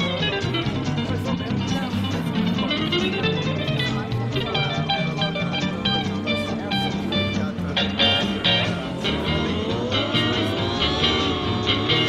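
Electric guitar music: quick runs of notes over a steady bass and rhythm backing, with sliding, bent notes near the end.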